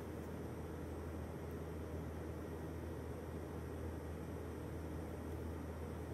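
Steady low hum and hiss of room tone, with no distinct event standing out.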